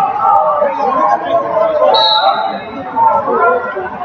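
Voices chattering in a large arena hall, with a short high referee's whistle about two seconds in, restarting the wrestling bout for the third period.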